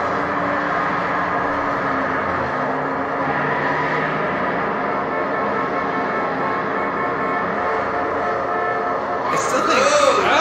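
Steady rumble of a moving vehicle from a film soundtrack, with low held engine tones and no break.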